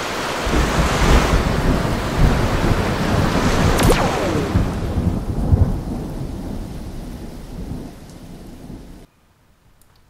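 Thunderstorm sound effect: rumbling thunder over steady rain, with one sharp thunder crack about four seconds in. It fades, then cuts off about a second before the end.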